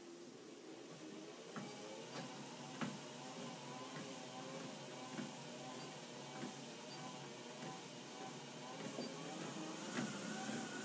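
TRUE treadmill motor and belt running at a slow walking pace, a faint steady hum that builds over the first second or two as the belt comes up to speed. Soft footfalls land on the belt about every 0.6 s, the heel strikes of a slow, long stride.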